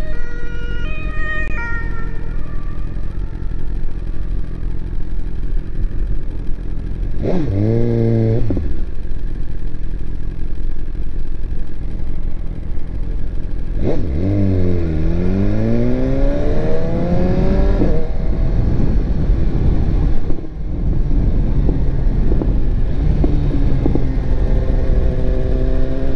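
2018 BMW S1000RR inline-four engine idling, revved in a quick blip that rises and falls about seven seconds in, and again midway with the pitch dipping and then climbing for several seconds. Near the end the revs rise again as the bike pulls away.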